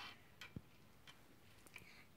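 Near silence with a few faint, irregular clicks, as of small plastic Lego pieces being handled.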